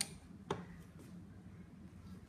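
A short plastic click about half a second in as the plastic mini-vault cylinder is handled, then quiet room tone.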